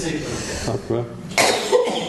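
Speech, with a single cough about a second and a half in.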